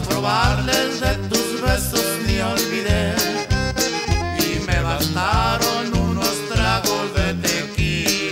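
Live Tejano conjunto music: a button accordion plays the melody with quick runs, over a bajo sexto, electric bass and drums keeping a steady beat.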